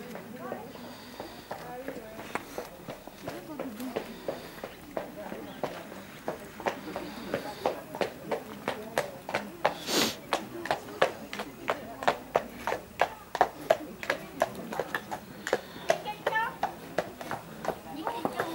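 Horse's hoofbeats at a steady trot on an arena surface, an even rhythm of about three beats a second that grows louder and sharper in the second half as the horse comes nearer.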